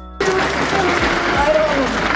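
Steady hissing outdoor background noise with faint voices in it, starting just after a music track cuts off.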